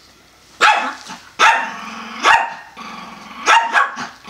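Small Pomeranian barking sharply about five times, with a low growl held between the barks, as the dogs square off.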